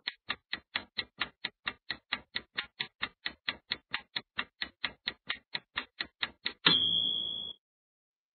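Clock-ticking sound effect of a quiz countdown timer, about four ticks a second. About seven seconds in it ends with a short, louder ringing tone that marks time up.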